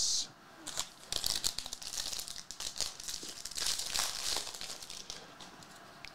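Foil trading-card pack wrapper crinkling and tearing as a hobby pack is ripped open, a dense crackle with small clicks that dies down after about four seconds.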